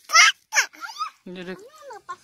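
A toddler's short, high squeals and wordless babbling in several quick bursts, with no clear words.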